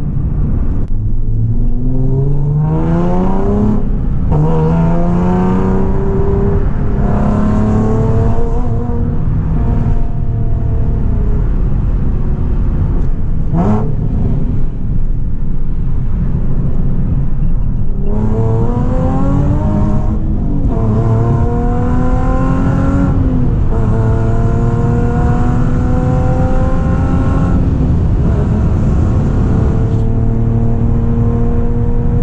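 Nissan Z sports car's V6 engine heard from inside the cabin, accelerating through the gears: the pitch climbs and drops back at each upshift several times, then holds steadier while cruising near the end. A single short sharp sound comes about halfway through.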